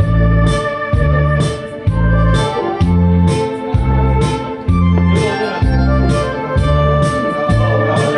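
Instrumental break of a trot song's backing track: electronic organ over a steady bass-and-drum beat.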